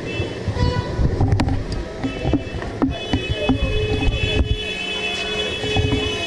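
Street ambience of a crowd walking along a city street, with low traffic rumble and scattered footsteps and clicks. Steady high-pitched electronic tones sound in the second half.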